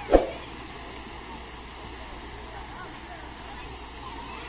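One sharp, loud knock just after the start, dying away within a fraction of a second. After it come faint distant voices over a steady outdoor background.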